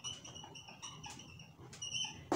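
Marker squeaking on a whiteboard as a curve is drawn: a string of short, high-pitched squeaks that stop and start with the pen strokes.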